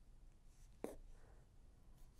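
Near silence with the faint rustle of hands working yarn on a bamboo knitting needle, and one small click just under a second in.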